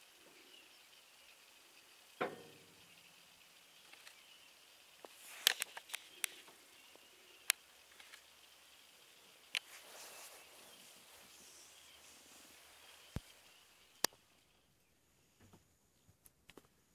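Quiet outdoor bush ambience with a faint steady high hum, one short pitched call about two seconds in, and a scatter of sharp clicks through the middle.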